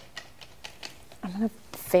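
Mostly quiet room tone with a few faint small clicks, then a woman's voice starts near the end.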